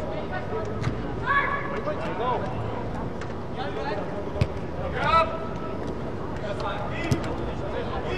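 Players' voices calling out across an indoor soccer pitch in a large air-supported dome, with a few sharp knocks of the ball being kicked, about three, over a steady low background noise.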